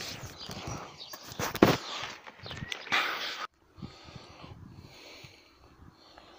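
Handling noise: a phone's microphone rubbing and knocking against a jacket, with a few sharp knocks, before the sound cuts out abruptly about three and a half seconds in. After that only faint outdoor background remains.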